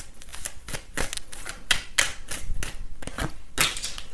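Tarot cards being handled: a run of light, irregular clicks and snaps, about four or five a second.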